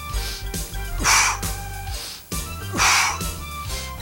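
A man breathing hard in time with an exercise, three loud breaths in about four seconds, over background music with a steady bass.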